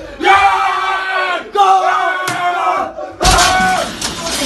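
Men shouting loudly in excited, celebratory yells while watching a football match: three drawn-out shouts of over a second each, with short breaks between. There is a sharp click near the middle.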